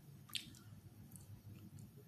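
Near silence in a pause between speech, with one faint wet mouth click, a lip or tongue smack, about a third of a second in.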